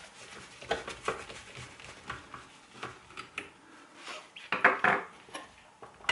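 Screwdriver backing small screws out of an electric shower's plastic housing: scattered light clicks and scrapes of metal on plastic, with a louder run of clicks about four and a half seconds in.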